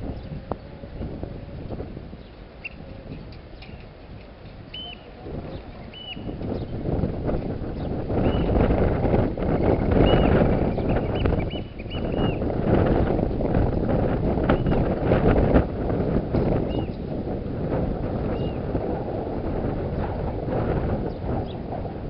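Wind blowing on the microphone, strengthening in gusts about six to eight seconds in, with a scatter of short high chirps over it.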